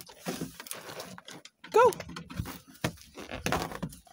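Irregular light knocks and rustling handling noise, with one short spoken command, "go", a little before the middle.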